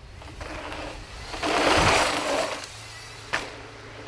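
Mountain bike riding past close by on a dirt trail: tyre noise on loose dirt that swells to a loud rush about a second and a half in as the bike goes by, with a low thump in the middle and a single sharp click near the end.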